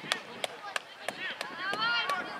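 Scattered sharp knocks, a few a second, with high-pitched young voices calling out, loudest near the end.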